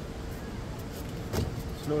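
Steady low outdoor rumble with a faint steady hum, broken by a single sharp knock about one and a half seconds in; a voice starts right at the end.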